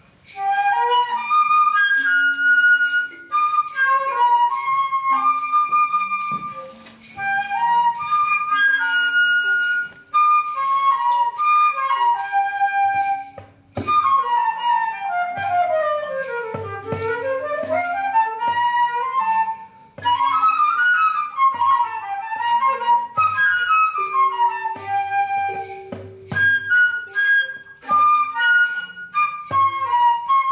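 Flute playing a melody over an accompaniment of sustained low notes and a steady high percussion beat, with fast cascades of notes sweeping down and back up in the middle.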